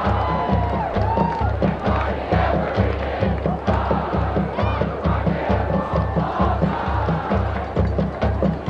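High school marching band playing a rock tune over a steady bass-drum beat, with the stadium crowd cheering and yelling over the music.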